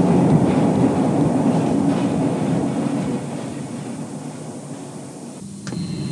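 Electric metro train running through a tunnel, a rumble with a low hum that fades away over about five seconds.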